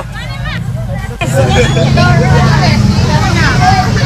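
Crowd chatter in a busy street over the steady low hum of motorbike engines, starting suddenly about a second in after a brief stretch of quieter voices.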